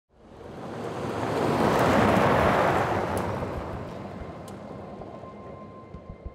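A car passing close by and driving away: a rushing swell of engine and tyre noise that peaks about two seconds in, then slowly fades.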